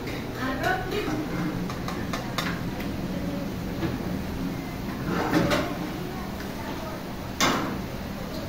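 Busy commercial kitchen: a steady background hum with scattered clinks and knocks of metal pans and utensils and faint voices, and one sharp clatter near the end.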